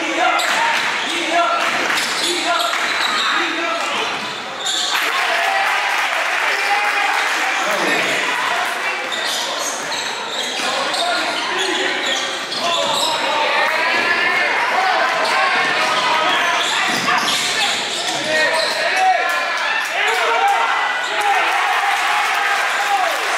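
A basketball dribbling and bouncing on a hardwood gym floor during a game, with players' and spectators' voices echoing in the large hall.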